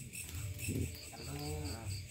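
Crickets chirping in a steady high pulse, about five chirps a second, with faint voices in the background.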